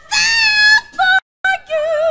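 Female jazz singer's voice, almost alone, through a stage microphone: a high held note, a short note, then a long note with wide vibrato. Just past the middle the sound cuts out completely for a split second.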